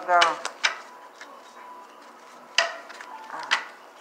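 Tarot cards being shuffled and knocked against the table: a few sharp clacks spaced out with pauses between them.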